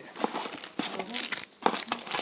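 Clear plastic wrapping around a trading-card pack crinkling as it is handled, in irregular crackles.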